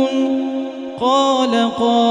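A man's voice reciting the Quran in a slow melodic chant. One long drawn-out note fades away, then a new long held note starts about a second in.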